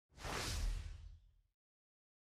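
A single whoosh sound effect for the logo reveal: a swell of airy noise over a low rumble, fading away after about a second.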